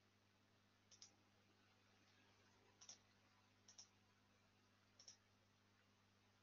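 Four faint computer mouse clicks, each a quick pair of clicks, spaced a second or two apart.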